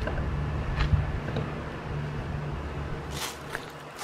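Steady low hum of an outdoor air-conditioning condensing unit, weakening about three seconds in, with a brief rustle at about that point.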